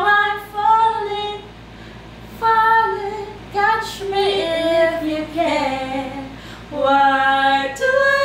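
Two women singing a song together without any accompaniment, in held, steady notes, with a short break between phrases about a second and a half in.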